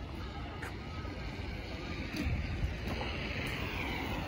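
Street ambience: a steady low rumble of road traffic with wind buffeting the microphone, and faint voices in the background.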